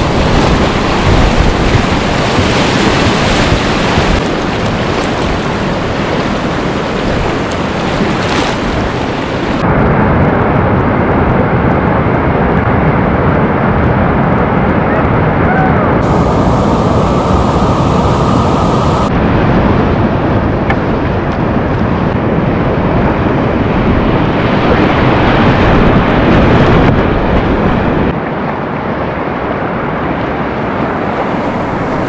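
Loud, steady rushing of river whitewater rapids, with wind buffeting the camera microphone. The tone of the roar changes abruptly a few times, about 10, 16, 19 and 28 seconds in.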